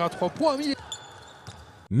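Live basketball game broadcast audio: a commentator's voice over arena noise, with a ball bouncing on the court. Near the end it cuts off abruptly.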